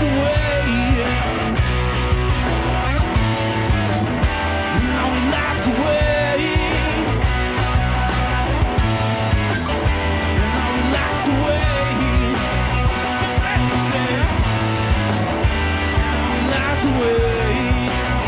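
A rock trio playing live: electric guitar, bass guitar and drums in a steady groove, with a man singing.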